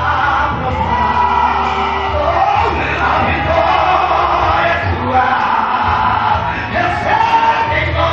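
A man singing a gospel song into a microphone over instrumental backing with a steady bass, amplified through a PA in a reverberant hall.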